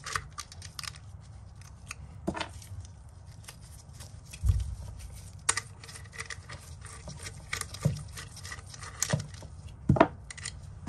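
Irregular small clicks and rattles of hardware being handled as the nuts are taken off the terminals of a voltage sensing relay, with one dull low knock about four and a half seconds in.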